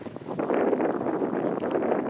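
Wind buffeting the camera microphone: a loud, rough rushing noise that swells up about half a second in and holds.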